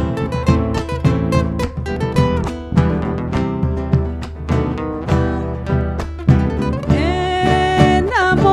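Instrumental passage of Argentine folk music: acoustic guitars strumming and picking a rhythmic accompaniment with an electric guitar, over the beat of a bombo legüero drum.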